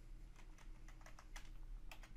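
Computer keyboard typing: a quick run of faint keystrokes entering a short word.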